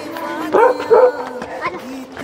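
Dog barking: two short barks about half a second apart, then a fainter one, over a steady low tone.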